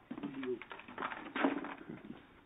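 Faint voices talking away from the microphone in brief, murmured snatches, too quiet to make out words.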